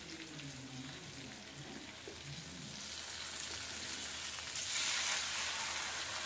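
Masala-coated fish pieces shallow-frying in oil with curry leaves in a nonstick pan: a steady sizzle that grows louder about halfway through, while wooden spatulas turn the fish.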